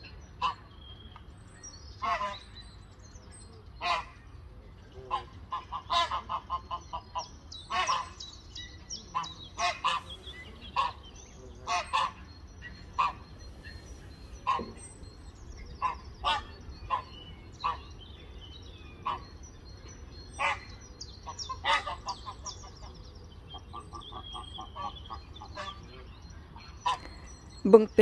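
Greylag geese honking repeatedly, short calls about once a second and sometimes in quick runs, with small birds twittering faintly in the background.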